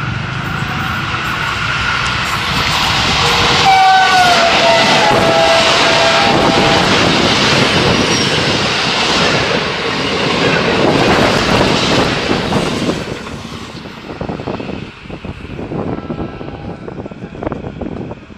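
AGE-30 diesel-electric locomotive and passenger train approaching and passing at speed. The horn sounds about four seconds in, a chord that drops in pitch as the engine goes by. The coaches then rush past with wheel clatter, fading after about thirteen seconds into gusts of wind on the microphone.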